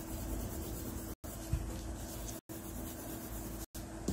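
Pencil rubbing and scratching on paper as a flashcard drawing is coloured in, with the sound cutting out briefly about every second and a quarter.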